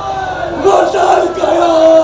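Stage actors' loud, drawn-out shouting cries, the pitch bending up and down in long swoops.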